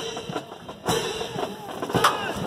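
Military band playing a march in the distance, a drum beat standing out about once a second, with faint talk from nearby spectators.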